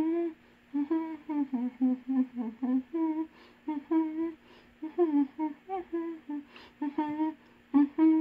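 A woman humming a tune with her mouth closed: a quick run of short notes in a steady rhythm, over a faint steady tone.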